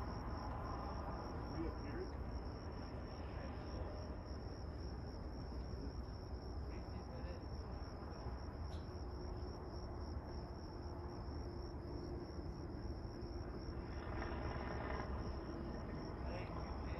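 Crickets chirping in a steady, high-pitched pulsing trill over a low background rumble.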